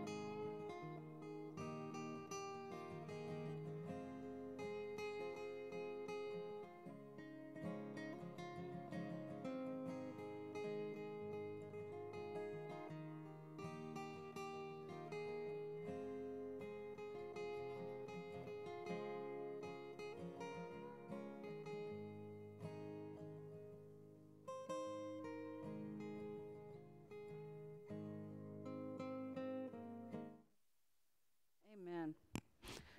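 Instrumental music: a strummed acoustic guitar playing slow, sustained chords that change every second or two.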